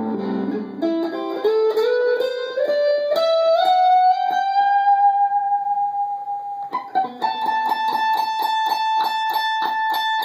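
Stratocaster-style electric guitar playing a run of single notes that climbs step by step and settles into a long held note. From about seven seconds in, one high note is picked rapidly over and over, about five times a second.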